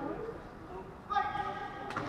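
Players' voices calling out across an indoor sports hall, with one held call lasting under a second about a second in.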